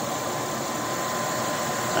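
Steady background machinery noise, an even rushing hum with a thin, steady high whine running through it.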